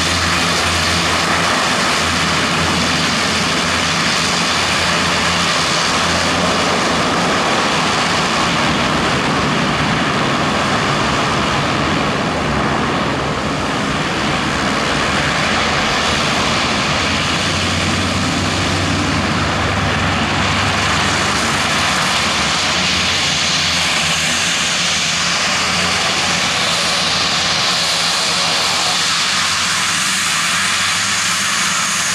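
Dornier Do 228's twin TPE331 turboprop engines running steadily as the aircraft taxis, a loud, even engine and propeller sound with a low hum under it.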